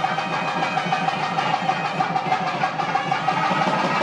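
Temple percussion with ringing during a lamp arati: an even, rapid beat of about five or six strokes a second under a steady ringing tone, continuous throughout.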